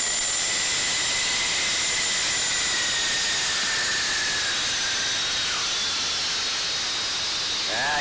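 Steady cockpit noise of a small aircraft in flight: engine and airflow hiss, with a faint high whine that drifts a little lower in pitch midway.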